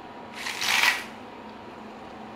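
One short rustle, about half a second long, of hands handling the fluorescent green string of a Tajima chalk-line reel.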